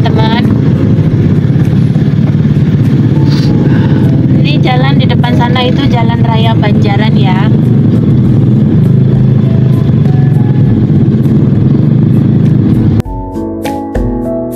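Steady low rumble of traffic and engines heard from inside a car crawling among motorcycles, with a high voice briefly in the middle. Near the end the rumble cuts off and piano music begins.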